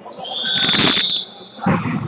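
A referee's whistle blown once, a steady high tone lasting a little over a second, in a reverberant sports hall; a short thump follows near the end.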